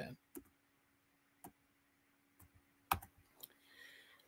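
Near silence with a faint steady hum and a few short, faint clicks, the loudest about three seconds in.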